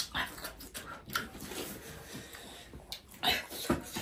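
People whimpering, hissing and breathing sharply from the burn of extra-spicy noodles, in short irregular sounds, with a louder cluster a little past three seconds in.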